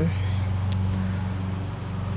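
A steady low hum of an engine or motor running, even in pitch throughout, with one short high click about two-thirds of a second in.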